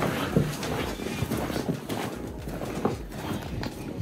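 Footsteps on hard ground, an irregular series of short knocks, with a steady hiss behind them.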